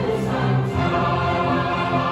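Large mixed choir of male and female voices singing held chords, with the harmony changing just under a second in.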